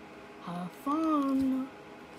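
A voice making a short wordless sound, then a longer sing-song note that rises and falls in pitch, about a second in.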